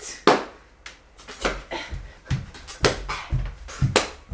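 Someone beatboxing a steady beat with the mouth, about two hits a second.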